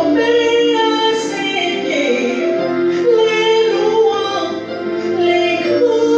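A woman singing a worship song into a microphone, the voice gliding between long-held notes.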